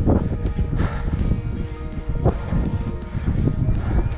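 Background music with held notes, over a low rumbling noise.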